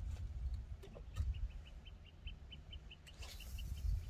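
A bird calling: a rapid, even series of short high notes, starting about a second in, over a low rumble.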